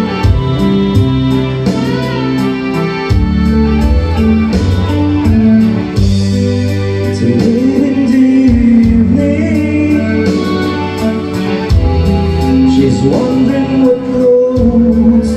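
Karaoke singing: a man singing into a microphone over a recorded backing track, both amplified through PA speakers.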